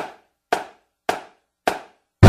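Four sharp, evenly spaced drumstick strikes about half a second apart, each dying away quickly: a four-beat count-in for a marching drumline.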